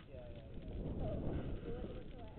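Indistinct voices of people talking, muffled and not forming clear words, over a low rumble of wind buffeting the camera microphone.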